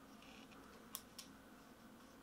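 Near silence broken by two light, sharp clicks about a quarter second apart, about a second in: a Canon EOS R6 mirrorless camera body being handled in the hands.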